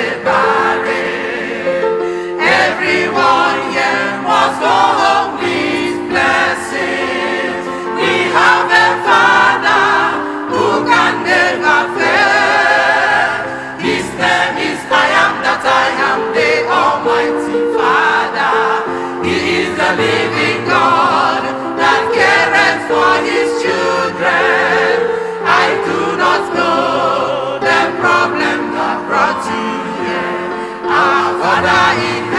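Church choir singing a gospel song in many voices, with sustained held notes between phrases.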